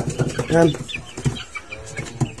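Young chicks peeping: a few short, high chirps about a second in, following a brief spoken word.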